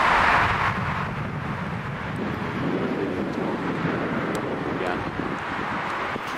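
Steady traffic noise from a busy multi-lane road below, loudest in about the first second.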